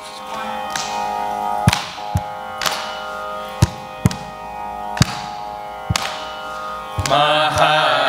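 A steady drone sounds with a few separate, irregularly spaced mridangam strokes. About seven seconds in, the group of voices starts singing together.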